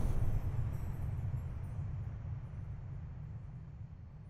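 A low, steady rumble that fades slowly away.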